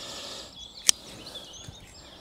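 Birds chirping faintly over outdoor background noise, with a single sharp click about a second in.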